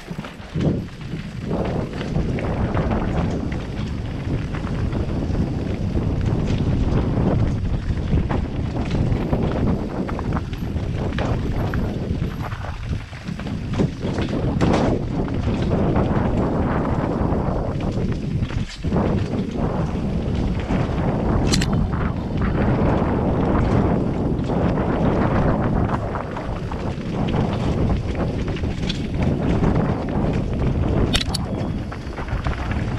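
Mountain bike ridden fast down a rocky trail, heard from a helmet camera: steady wind rush on the microphone over the tyres rolling across rock and loose stones, with scattered sharp knocks and rattles from the bike taking the hits.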